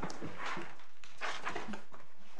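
Paper rustling in several short bursts as pages of court bundles are turned.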